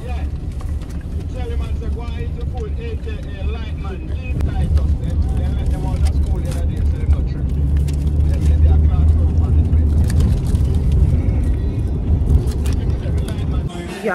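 Road and engine noise of a moving car heard from inside the cabin: a steady low rumble that grows louder about halfway through, with faint voices under it.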